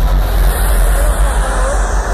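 Loud, steady rumbling roar with heavy bass and no clear beat from a festival main-stage show, as the stage pyrotechnic flames fire.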